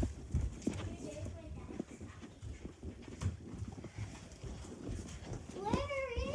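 Irregular thumps and rustling from a handheld phone camera being moved and brushed against things close to its microphone, with a faint voice about a second in. Near the end comes a loud, high-pitched vocal sound that rises and falls.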